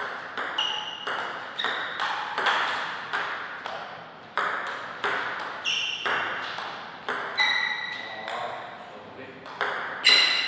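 Celluloid-type table tennis ball clicking off rubber paddles and the tabletop in a rally, about two or three hits a second with a brief pause midway. Some hits leave a short ringing ping, with a slight echo after each.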